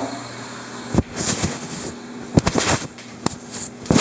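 Handling noise from a handheld camera being wrapped in a towel: several knocks and short scratchy rubs of cloth against the microphone.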